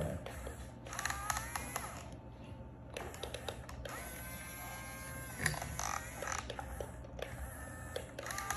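Electric gear motors of a Yigong remote-control toy excavator whining in short runs as the boom and arm move. There is a rising whine about a second in and a steady whine in the middle, with small clicks and scrapes between runs.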